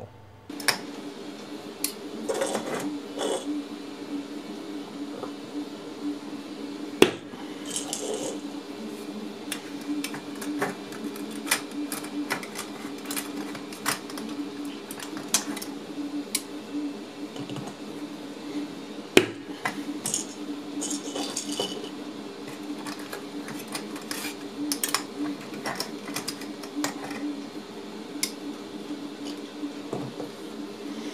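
Small hard clicks and clacks of 3D-printed plastic cubes with embedded ball magnets being handled, with two much sharper snaps, one about a quarter of the way in and one near the middle. A steady low hum runs underneath.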